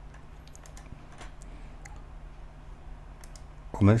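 Light keystrokes on a computer keyboard, a handful of separate clicks at uneven intervals, over a steady low electrical hum.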